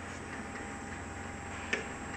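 Steady hum of a checkweigher conveyor line and factory machinery, with one sharp click near the end as a cardboard tub is set down on the moving belt.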